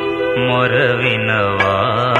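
Telugu Christian devotional song: a sustained chord, then about half a second in an ornamented melody line with wavering pitch comes in over a held low bass.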